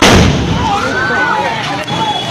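An LPG gas cylinder exploding in a fire: one sudden, very loud blast, followed at once by people shouting.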